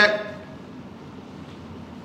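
A man's speech ending on a drawn-out vowel, followed by a pause of faint room tone through the lecture-hall microphone.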